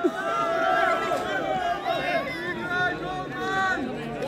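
Several voices of players and onlookers talking and calling out at once, overlapping chatter with no single clear speaker.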